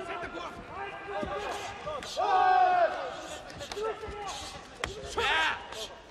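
Several voices shouting over a full-contact karate bout, one long call about two seconds in and another near the end, with a few dull thuds of strikes landing.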